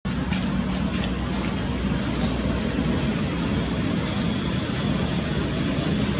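Steady low background rumble, with faint short high chirps or ticks now and then.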